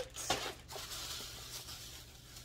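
Plastic bag rustling and crinkling as items are handled, with a light knock or two in the first second.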